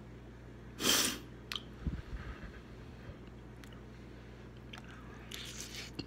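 A person eating spicy noodles: soft wet chewing and mouth noises, with a short loud intake of air about a second in and noodles slurped in near the end.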